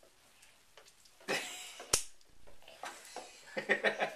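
Bath water splashing in a tub about a second in, with a sharp knock soon after; laughter starts near the end.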